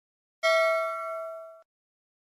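A single bell-like ding sound effect. It starts about half a second in, fades over about a second and cuts off.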